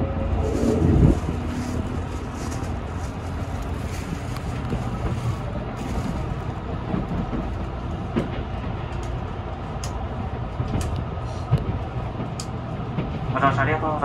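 Steady low rumble of a moving train heard from inside the passenger car, with a few light clicks and knocks.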